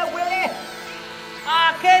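Killer whale calls: high, pitched calls that bend up and down, one at the start and another about a second and a half in.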